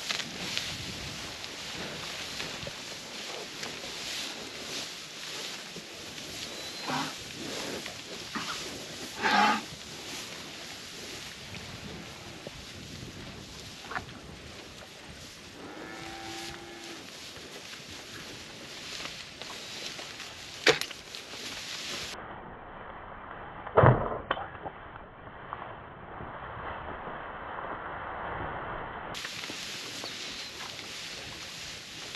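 Beef cattle herd in a pasture over a steady rustling background, with one cow giving a short low moo about halfway through. Several sharp knocks break in near the end, the loudest sounds in the stretch.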